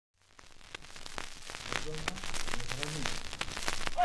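Vinyl record surface noise from a used 45 rpm single: crackles and pops from the stylus over a light hiss, fading in. A faint voice is heard from the recording about two seconds in.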